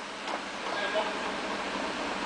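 Steady, even background hiss.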